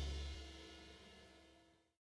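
The final chord of a rock band's song ringing out, cymbals and guitar decaying and fading away, mostly gone about a second in.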